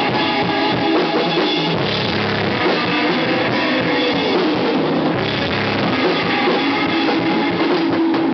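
Live hardcore punk band playing: drum kits and electric guitar, playing steadily without a break.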